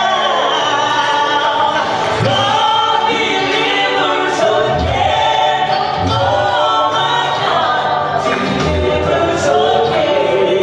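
Southern gospel group singing live into microphones, women's voices leading with others in harmony.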